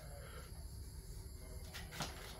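Faint low background rumble with light hiss, and a soft click near the end.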